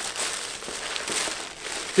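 Crumpled shipping packaging crinkling and rustling steadily as hands rummage through it in a plastic bin.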